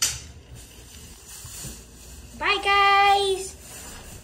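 A sharp knock at the start, then quiet, then a young person's voice calls out once in a single held, steady-pitched note about two and a half seconds in.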